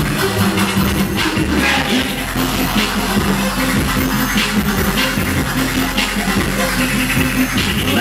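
Turntable scratching: a DJ's hand working a vinyl record, cut in over a backing beat.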